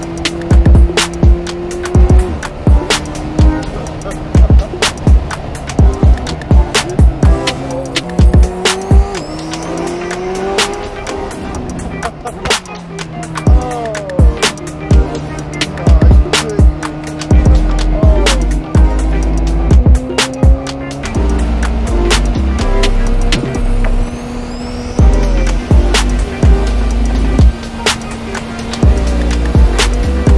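Background music with a steady drum beat and deep bass notes that change pitch in steps.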